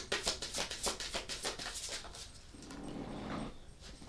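A tarot deck being shuffled by hand: a quick run of card slaps and clicks, about eight a second, for the first two seconds. A soft, low hum follows about three seconds in.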